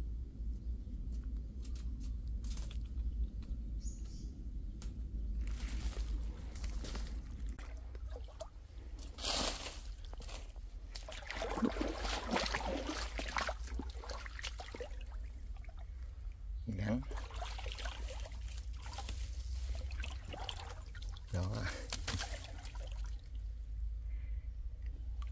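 A squirrel in a wire cage trap biting at the trap, a scatter of small clicks. Then, from about six seconds in, water splashing and trickling in a shallow stream in uneven surges.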